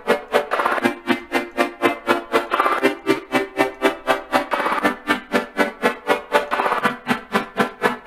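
Xfer Serum software synthesizer playing a detuned chord progression through its Hyper/Dimension effect, the sound pulsing in even rhythmic chops about four times a second, with a change of chord every couple of seconds.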